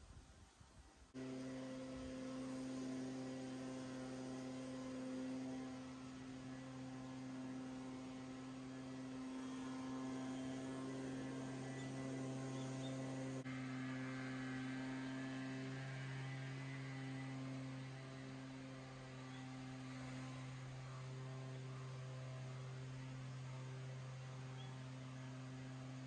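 A steady low hum with several overtones that switches on abruptly about a second in and holds steady throughout.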